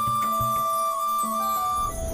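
Background score: a flute holds one long steady note over a lower sustained tone, and the note stops just before the end.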